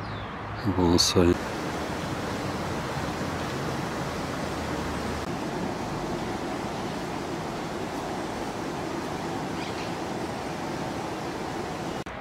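A steady, even rushing background noise with no rhythm or pitch, with a short spoken word about a second in.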